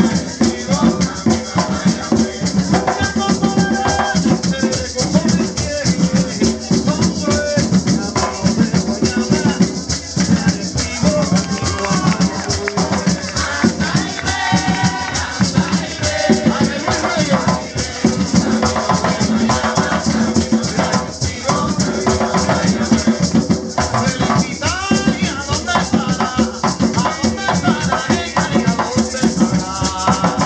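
Live Puerto Rican bomba: several barril drums played by hand in a fast, steady rhythm, with a maraca shaking over them and voices singing.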